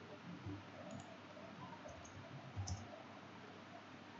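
A few faint computer mouse clicks, scattered, with a double click about two and a half seconds in.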